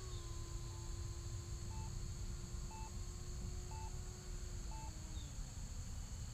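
Outdoor field ambience: steady insect chirring and a low wind rumble, with a faint distant hum from the high-flying electric ducted-fan model jet that drops in pitch near the end. A short electronic beep sounds about once a second through most of it.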